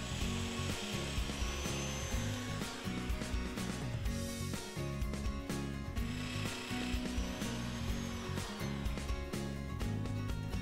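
Festool Domino 500 joiner cutting mortises in walnut, its motor spinning up and winding down twice, under background music.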